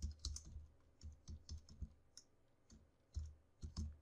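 Computer keyboard being typed on: faint, irregular key clicks in short runs.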